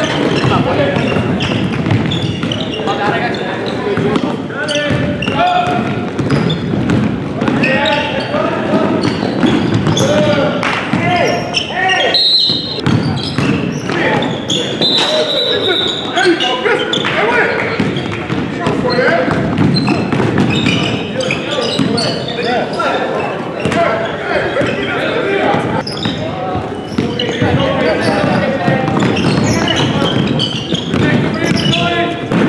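Basketball game sound in a large gym: a basketball bouncing on a hardwood court as it is dribbled, amid a steady mix of indistinct voices from players and onlookers.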